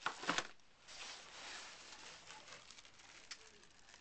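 Plastic packaging of an iPod case three-pack crinkling as it is handled, with two sharp crackles at the start, softer rustling after, and a single click near the end.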